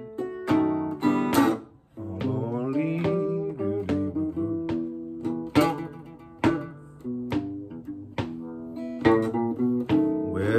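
Chicago blues guitar break on a Gretsch Gin Rickey acoustic guitar strung with flatwounds: picked single-note runs and chords, with sharp attacks roughly once a second. A foot keeps time on a wooden stomp board. The playing drops away briefly about two seconds in.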